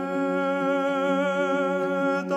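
Vocal chant: a low sustained drone under one long held sung note with a slight vibrato.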